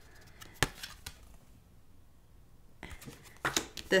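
Tarot cards being handled and laid down on a table: a sharp click about half a second in, then quiet, then a quick cluster of clicks and taps near the end as the cards are set down.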